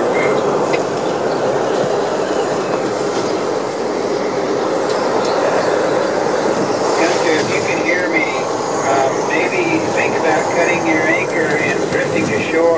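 Hurricane Odile's wind blowing steadily around a boat, heard from inside the hull as a loud, unbroken rush. From about seven seconds in, wavering higher-pitched sounds join it.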